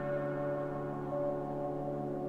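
Slow ambient background music of held, steady tones at several pitches.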